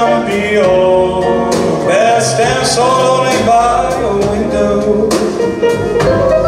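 A live ensemble with accordion and strings plays a melodic instrumental passage over a steady bass and light regular percussion.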